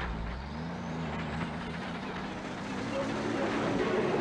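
Semi-truck diesel engine running under load, its pitch wavering slightly.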